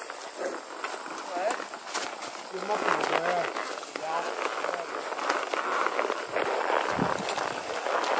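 Horses walking, with irregular soft hoof falls, under faint talking from riders in the background.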